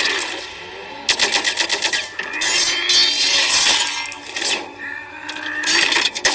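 Film sound effects of clanking metal: a rapid run of clicks about a second in, then ringing metallic scrapes and clinks, easing off near five seconds and rising again at the end.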